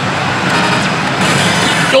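Pachislot machine effects over the loud, dense din of a pachinko hall, growing brighter and fuller about a second in as the machine moves to its bonus-end screen.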